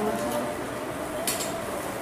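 Tableware clinking at a meal: plates and serving spoons knocking lightly, with one sharp clink a little past halfway through.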